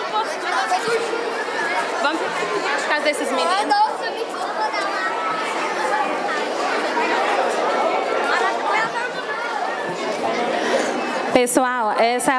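Many children and adults chattering at once in a large hall, a steady hubbub of overlapping voices. Near the end a single woman's voice starts speaking over it.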